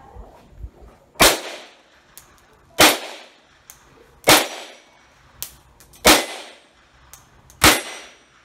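Beretta 950B pocket pistol in .25 ACP (6.35 mm) firing five single shots about one and a half seconds apart, each a sharp crack that trails off briefly.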